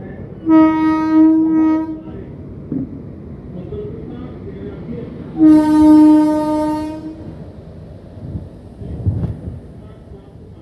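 Two long blasts of a WAG7 electric locomotive's horn, each about one and a half seconds, the second about five seconds after the first, over the rumble of a freight train rolling slowly past. A short low thump sounds near the end as the locomotives go by.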